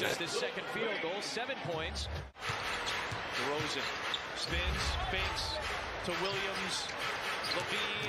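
A basketball being dribbled on a hardwood court, under TV play-by-play commentary. The sound drops out briefly about two seconds in.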